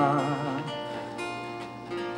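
Acoustic guitar strummed softly under a song's intro. A held wordless sung "da" note wavers and dies away in the first half second, leaving the guitar ringing alone.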